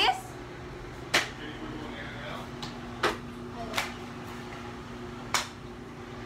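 About five sharp taps or knocks at irregular intervals, over a steady low hum.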